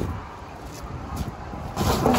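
Steady low rumble of road traffic going by, with a couple of faint clicks.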